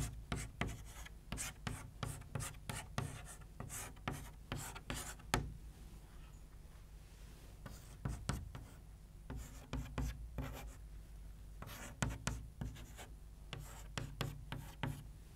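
Chalk writing on a chalkboard: a string of quick taps and scrapes as letters and arrows are drawn, with a short lull about halfway through before the strokes resume.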